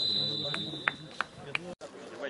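Referee's whistle: one long, steady, high-pitched blast that stops a little over a second in, followed by a few sharp clicks about a third of a second apart.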